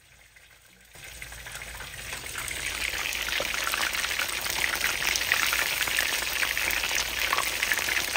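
Beer-battered shrimp frying in hot oil in a skillet: a dense, crackling sizzle that fades in over the first couple of seconds, then carries on steadily.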